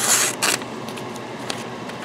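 Spyderco Tenacious folding knife's 8Cr13MoV blade slicing through a sheet of lined notebook paper: a short rasping swish in the first half-second, then a softer, steady paper rustle as the sheet is handled. The slicing is a test of the blade's sharpness, which is called very sharp.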